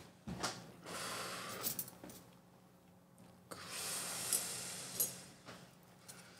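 A person breathing out smoke in two long breathy exhales, each about a second and a half, close to the microphone.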